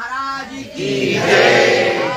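Call-and-response devotional chant: one male voice sings a short line into a microphone through the sound system, and a large congregation sings it back in unison.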